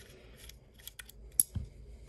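Small metal clicks and ticks of a precision bit driver turning a tiny screw to take the standoff out of a folding knife's handle, with one sharp click about a second and a half in.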